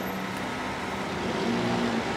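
Steady traffic noise with a vehicle engine's low hum, growing slightly louder near the end.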